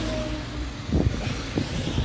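Road traffic on a wet street: a steady wash of car and tyre noise with a low rumble, and a short knock about a second in.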